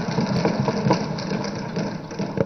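Many legislators thumping their wooden desks in approval: a dense, continuous patter of knocks with a heavy low thud to it.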